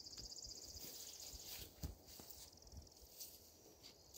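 Near silence with a faint, high insect trill that stops about two seconds in, and a few faint low knocks.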